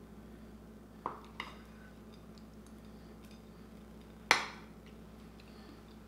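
A metal fork clinks lightly against a ceramic plate twice, then a sharper, louder clack about four seconds in as the plate is set down on a stone countertop.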